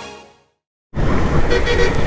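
Background music fading out, a brief dead silence, then road vehicle noise cutting in suddenly about a second in, a steady low rumble.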